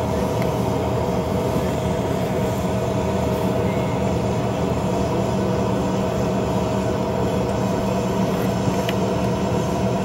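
Yakovlev Yak-40's three rear-mounted Ivchenko AI-25 turbofans running steadily at low power, heard inside the passenger cabin as the jet taxis. A constant engine drone with a steady whine over it.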